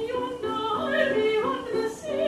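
Operatic singing with piano accompaniment: a voice moving through short, changing notes.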